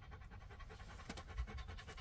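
A Belgian Malinois panting faintly in a fast, even rhythm.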